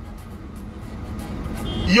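Low, steady rumble of a car's cabin noise, growing slightly louder toward the end. A man's voice starts again at the very end.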